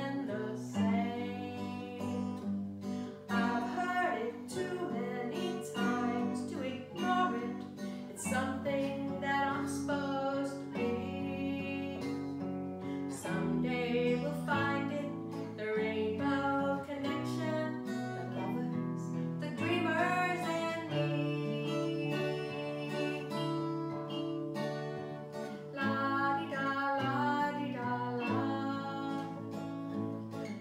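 Live acoustic music: a woman singing over strummed acoustic guitar and keyboard chords.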